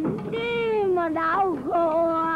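A woman wailing a lament in Vietnamese in long drawn-out sung notes: the first slides down in pitch, the voice catches and breaks, then another long note is held. It is the keening of grief, addressed to a husband gone to war.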